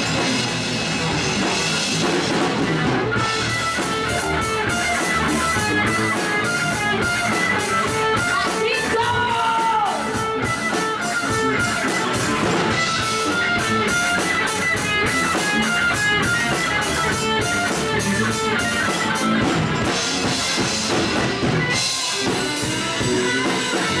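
Live rock band playing: electric guitars and bass guitar over a drum kit keeping a steady beat.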